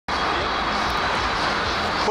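Steady, loud, engine-like roar of outdoor street noise, such as traffic or a passing aircraft, with faint voices in it. It starts suddenly and drops away at the end.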